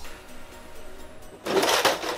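Old metal cantilever toolbox full of hand tools being opened about one and a half seconds in: a short loud rattle and scrape of the metal trays swinging out and the tools shifting, over faint background music.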